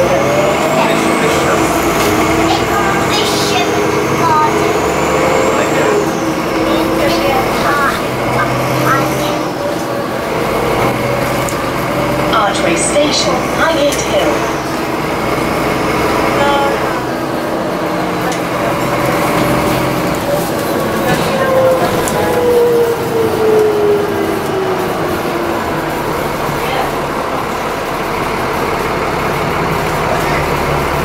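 Alexander Dennis Enviro400 double-decker bus heard from inside the passenger saloon while driving in town traffic: the engine and transmission whine rises and falls with road speed, falling away steadily about three-quarters of the way through as the bus slows.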